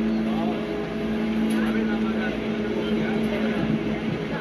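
Lofi jazz backing track: a held low tone under a hazy, hissy wash, with a few faint sliding notes, before the clarinet comes in.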